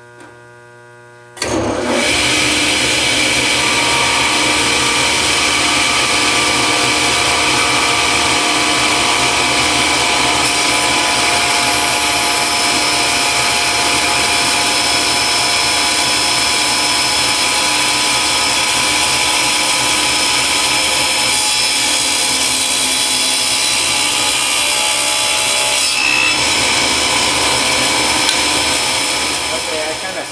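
Table saw switched on about a second and a half in and running loud and steady as a piece of acrylic is fed through the blade, dropping away near the end.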